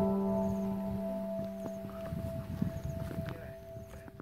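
Background music: a soft held chord, struck just before, slowly fading away, with faint low rumbling noise underneath.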